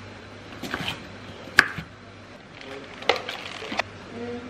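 Kitchen knife chopping salad vegetables on a wooden chopping board: a few irregular sharp knocks, the loudest about one and a half seconds in, then a quick run of several more near the end.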